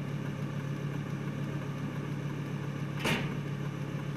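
Car engine idling, heard from inside the cabin as a steady low hum. A short noise sounds about three seconds in.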